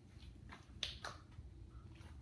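Faint handling sounds of hands working dough at a counter: three short, sharp clicks within about half a second, over a low steady room hum.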